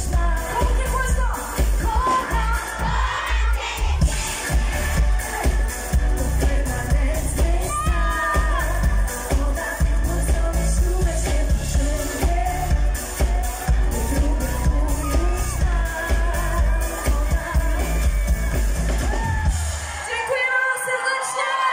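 Loud dance-pop music played over a concert PA, with a heavy, regular bass beat and a woman's voice singing over it. The beat drops out right at the end.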